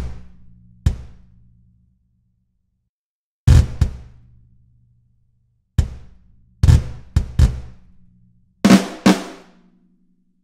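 Single sampled drum hits from a MIDI-triggered virtual drum kit, played one at a time at irregular intervals (some in quick pairs), each ringing out for about a second, as the notes are clicked while their velocities are set by hand.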